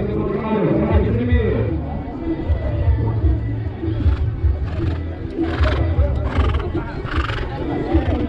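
A horse whinnying, heard over music and a voice.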